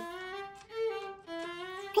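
Background music: a violin playing a few slow, held notes.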